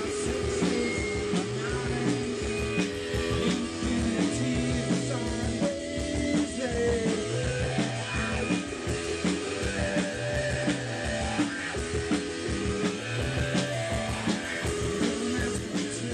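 Live rock band playing: electric guitars, bass guitar and drum kit, with a steady driving beat.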